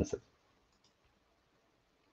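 The tail of a man's word in the first instant, then near silence with two faint clicks under a second in.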